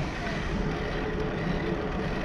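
Steady wind and road noise on the microphone of a bicycle riding along a paved path, with a low, fluttering rumble.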